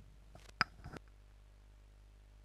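A few short clicks in the first second, the loudest a single sharp click a little past half a second in, then only a faint steady low hum.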